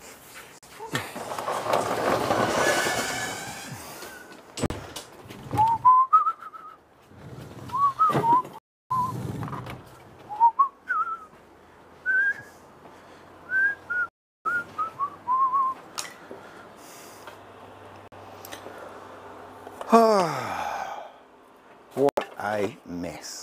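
A person whistling a loose string of short notes, each sliding upward, with knocks in between. A rush of noise comes a second or two in, and a falling squeal near the end.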